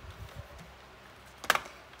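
Hands setting a strip of paper onto a stamp-positioning platform: faint rustling and handling, with one short sharp click about one and a half seconds in.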